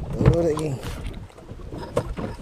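A man's brief drawn-out vocal sound, not clear words, about a quarter of a second in, with a few light knocks and handling noise on a small boat.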